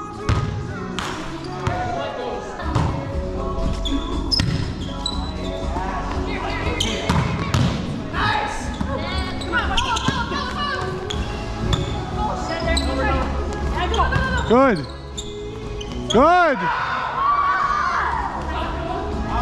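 Indoor volleyball rally in a large, echoing gym: the ball is struck several times, with players' voices in the background. Two loud, short squeals come near the end.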